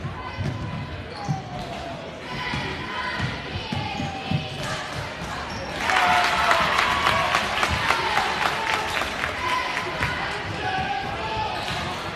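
A basketball being dribbled on a hardwood gym floor, with voices shouting in the echoing gym. About six seconds in it gets louder, with more yelling and a dense run of claps from the crowd and bench.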